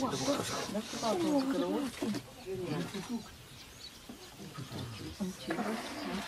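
People's voices exclaiming without clear words, their pitch rising and falling, loudest in the first two seconds. It turns quieter in the middle and the voices pick up again near the end.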